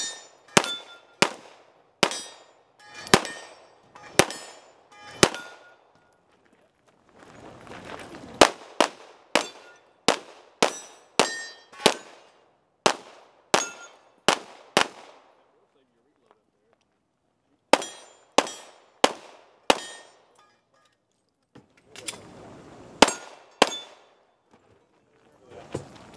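Handgun shots fired in quick strings of several, about two a second, with short pauses between strings. Several shots are followed by a brief metallic ring, typical of steel targets being hit.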